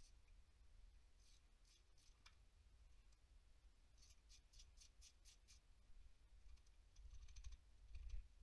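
Faint socket ratchet clicking in short runs, the longest a quick string of about seven clicks around the middle, as exhaust manifold bolts are worked loose.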